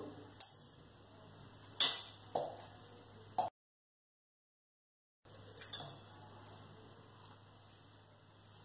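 A few sharp, separate clinks of kitchen utensils knocking against a pan or spice containers. The sound cuts out completely for about two seconds midway, and one more clink follows.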